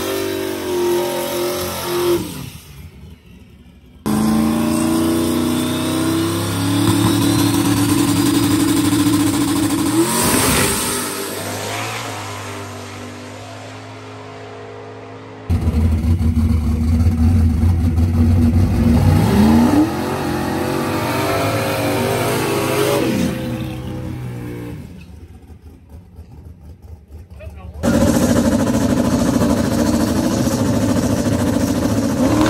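Drag race cars' engines at the start line: a burnout and hard launches, engines revving and rising in pitch as the cars pull away. The sound comes in several clips that cut abruptly from one to the next.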